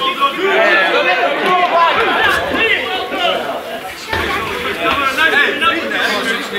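Several men's voices shouting and chattering over one another: players calling on the pitch and spectators at the rail.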